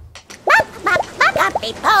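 A cartoon character's voice laughing in short, high, rising 'ha' bursts, about five of them.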